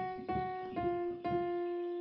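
Piano playing a slow single-note melody: F-sharp struck twice, then a semitone down to F, struck twice and held.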